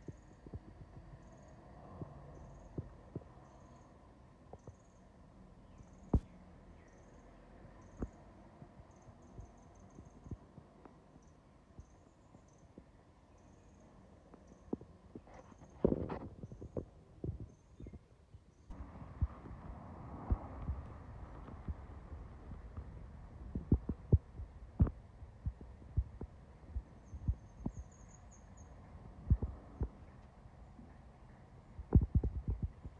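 Quiet outdoor background with low thumps and knocks from a handheld camera being handled, over a steady hum. A short, high chirp repeats about once a second for the first half. After a cut in the second half the hum is louder and the thumps come more often.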